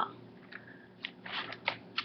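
A stand-up plastic-and-foil snack bag crinkling as it is handled and turned, in a few short crackles about half a second apart.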